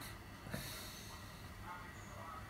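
One short, sharp breath out through the nose, about half a second in, over faint room hum.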